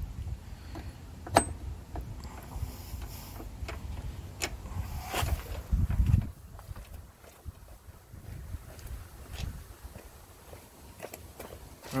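A few sharp metallic clicks and knocks as the new steering pinion gear is worked into mesh with the steering sector gear by hand, the loudest about a second in. Under them is a low rumble that swells around six seconds and then falls away.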